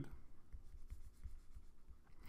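Faint scratching and light taps of a stylus writing on a tablet.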